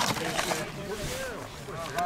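Takeout packaging being handled: rustling and clicking of paper napkins, a cardboard carrier and a foam clamshell box, busiest in the first half second. People talk in the background.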